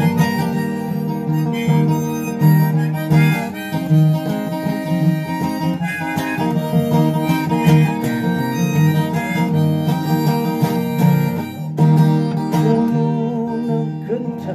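Harmonica in a neck rack playing an instrumental break over acoustic guitar accompaniment.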